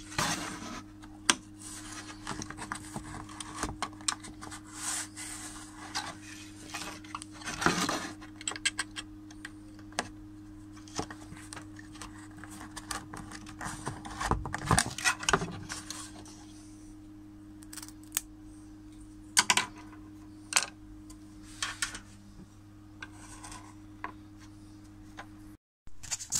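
Craft knife blade cutting and scraping through a thin wooden float stem on a plywood board, in irregular scrapes with sharp clicks, a few louder strokes among them. A steady low hum runs underneath.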